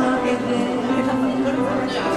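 A woman singing a long held note into a microphone over live instrumental accompaniment.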